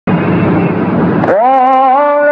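A loud rushing noise for about the first second, then a solo voice starts singing, gliding up into a long held note in a melismatic, chant-like style.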